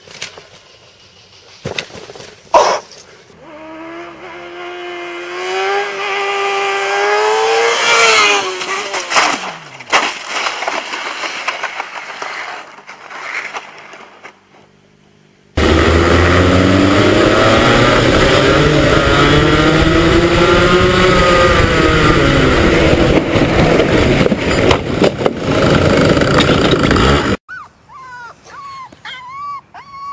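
Racing kart engines running loud at full race speed, their pitch rising and falling with the revs, from about halfway in until they cut off abruptly near the end. Then a puppy howls in short calls that rise and fall. Before the karts, a quieter sound with a steady pitch wavers up and down and then glides away.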